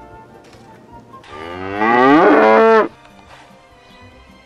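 A cow mooing once: a single long call of about a second and a half that rises in pitch at its start.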